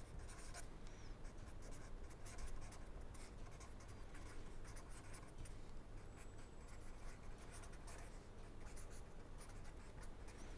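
A pen writing on paper: faint, irregular scratching strokes as words are written out by hand.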